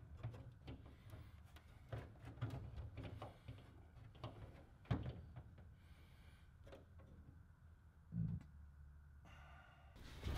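Faint, scattered clicks and light knocks of a metal gascolator and aluminium angle pieces being handled and set in place on an aluminium aircraft cockpit floor, with one duller thump about eight seconds in.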